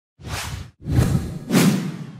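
Logo-reveal sound effect: three whooshes in quick succession, each with a heavy low end. The third swells near the end.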